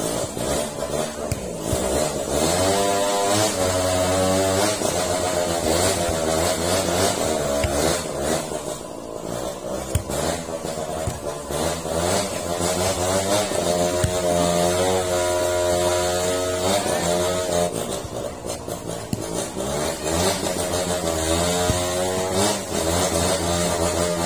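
An engine running throughout, its pitch rising and falling again and again over a few seconds at a time, over a steady low hum.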